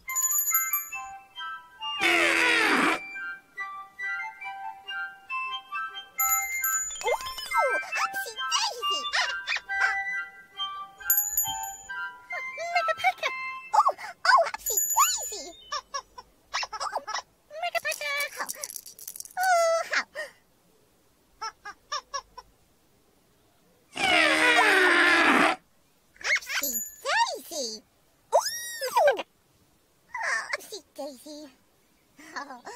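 Gentle children's-show music with chiming tones, mixed with wordless character voices. Two loud, brief, noisy blasts with falling pitch land about two seconds in and again about twenty-four seconds in.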